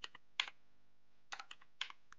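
Keystrokes on a computer keyboard while code is being typed: a couple of separate key presses, a pause of nearly a second, then a quick run of four more.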